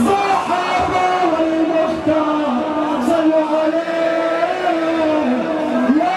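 Singing in a slow, drawn-out melody with long held notes that step up and down, over the noise of a large crowd.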